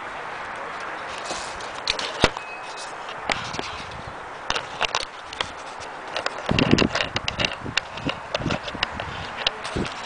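Handling noise from a video camera being set into a stand: a sharp knock about two seconds in, then a run of clicks and knocks with a heavier thud near the middle, over a steady hiss. The diesel engine is not yet running.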